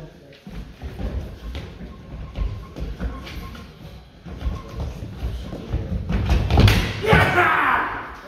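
Fencers' footwork thudding on a wooden floor during a historical sabre bout: a run of quick, uneven low thumps as they step and lunge. Near the end a man shouts "Yes" as the exchange ends.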